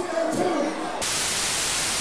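A burst of loud, even static hiss that cuts in abruptly about a second in and cuts off just as suddenly about a second later, after faint background voices and crowd sound.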